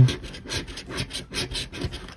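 A coin scratching the latex coating off a scratch-off lottery ticket in quick back-and-forth strokes, about six a second.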